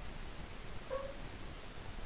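A single short call, like a small animal's, about a second in, over a steady faint hiss.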